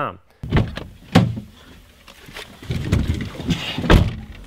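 Clicks and thumps of a car's door and controls being handled from inside the cabin. There is a loud click about a second in, a low rumble in the middle, and another sharp click near the end.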